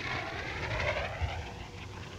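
A whistling whine falling steadily in pitch: simulated incoming artillery, the whistle of a training artillery simulator just before it detonates.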